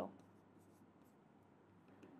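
Near silence with faint, soft scratching of a stylus writing on an interactive whiteboard screen.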